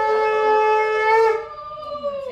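A conch shell (shankh) blown in one long, steady note. The note weakens about a second and a half in. The blowing is part of a Hindu blessing ritual.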